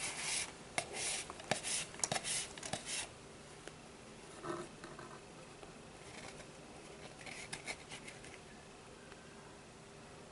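Cord rubbing and scraping as it is pulled through a Turk's head knot wound on a cardboard tube: a quick run of short strokes over the first three seconds, then a few fainter ones about seven seconds in.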